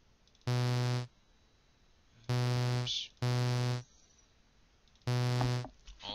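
Four short notes from a StageLight software synthesizer, all on the same low pitch and each about half a second long. They are the previews that play as notes are placed in the piano roll.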